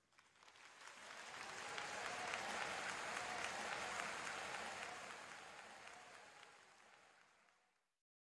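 Large audience applauding, swelling over the first couple of seconds and fading away toward the end.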